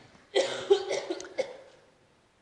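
A man coughing, about three coughs in quick succession over a second and a half.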